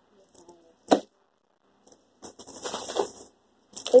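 A single sharp snap about a second in, then about a second of plastic crinkling and rustling as packaging and a shopping bag are handled.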